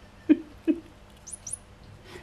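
Kittens playing with a squeaking toy mouse: two short, louder squeaks about half a second apart, then two faint high-pitched chirps.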